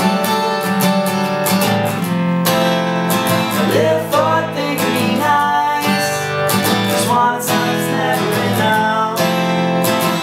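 Acoustic guitar strummed in a steady rhythm, with two men singing a song over it.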